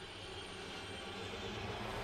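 Cartoon sound effect of smoking wreckage plunging out of the sky: a steady, aircraft-like rushing noise that grows slightly louder.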